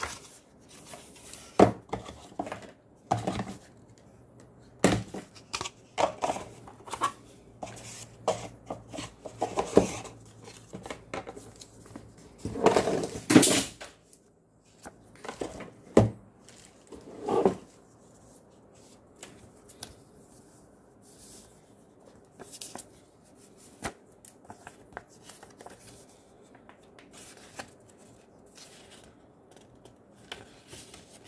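Cardboard box and packaging handled by hand: scattered knocks, scrapes and rustles. The loudest is a rustling stretch about 13 seconds in, followed by a sharp knock a few seconds later. Quieter paper handling follows as a booklet is opened.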